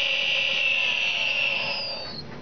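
Brushless outrunner electric motor for an RC model plane, bench-run unloaded after a home repair, giving a steady high-pitched whine. The whine drops in pitch and dies away near the end as the motor spins down.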